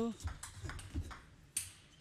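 Table tennis ball clicking off rubber paddles and the table during a rally: a few sharp ticks, the loudest about one and a half seconds in.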